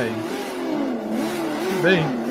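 Chainsaw-style drive of a radio-controlled animatronic trike running, its pitch rising and falling as it revs.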